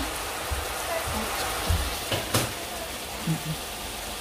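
Ground pork and chopped onion frying in a pot: a steady sizzling hiss, with one sharp click a little over two seconds in.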